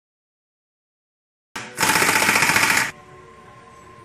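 Pneumatic impact wrench hammering on the crankshaft pulley bolt in one loud burst of about a second, cutting in abruptly.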